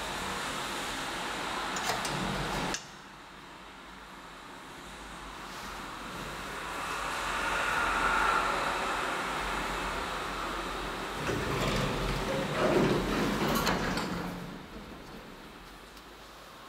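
1960 Schindler traction elevator running in its shaft, the sound swelling as the car approaches and then easing. About eleven seconds in, the landing door is opened with clunks and a sliding rumble.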